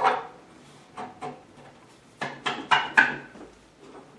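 Bolts being handled and pushed through holes in a wooden workbench leg assembly: a few sharp clicks and knocks of metal against wood, with a cluster of louder ones in the second half.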